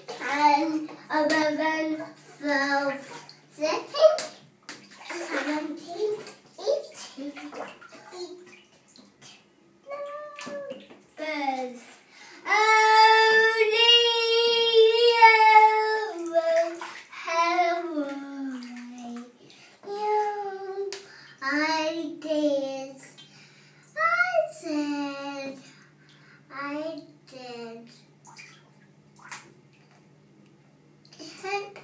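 A toddler singing and chattering in a bathtub, holding one long sung note for about three seconds midway, with water sloshing and splashing between his phrases.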